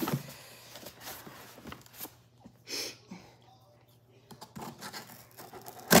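Hands working at a glued-shut cardboard shipping box: faint scrapes and small clicks, a short rustle about halfway through, then a loud sudden rip near the end as the glued cardboard is torn open.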